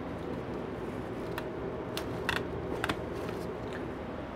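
Leaves being stripped by hand from a harvested cannabis plant: several short, sharp snaps and rustles as leaf stems break off. A steady machine hum runs underneath.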